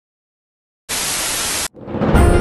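Dead silence, then a burst of even, hiss-like static lasting under a second that starts and cuts off abruptly, like an edited-in noise effect.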